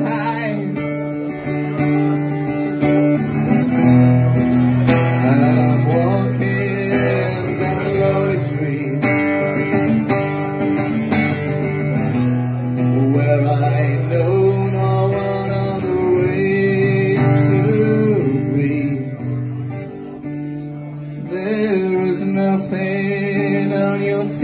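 Acoustic guitar played live, chords strummed and picked, with a man singing over it.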